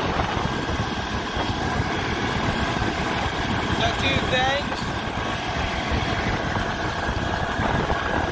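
New Holland Boomer 55 compact tractor's diesel engine running steadily as the tractor drives along at road speed.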